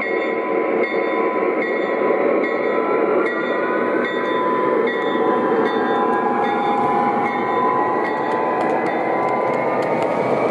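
O gauge model train running past: a Lionel Conrail GP35 locomotive and freight cars rolling on three-rail track, a steady running noise with a few held tones and light clicks about once a second.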